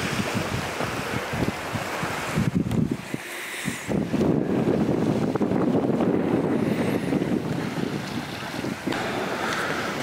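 Wind buffeting the camera microphone in uneven gusts, a rough noise that grows stronger about four seconds in.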